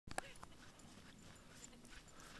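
Near silence, broken near the start by a brief, faint yip from a husky-type dog.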